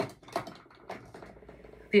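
Light clicks and knocks of small objects being handled: a sharp click at the start, then several fainter ones over the next two seconds.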